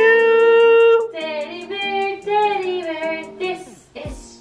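A high singing voice holds one long note for about a second, then sings a run of shorter notes over music, with a light regular tick behind it.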